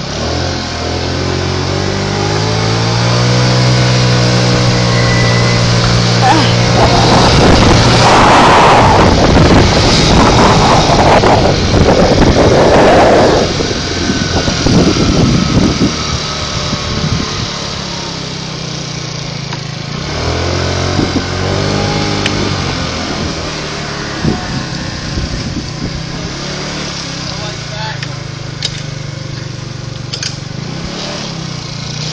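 A vehicle engine running, its pitch rising steadily over the first several seconds as it gathers speed. Then a loud rushing noise lasts for several seconds, and the engine is heard again about twenty seconds in.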